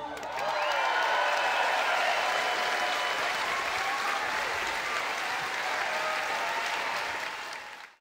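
Concert audience applauding with some scattered cheering voices as a song ends, the applause fading out near the end.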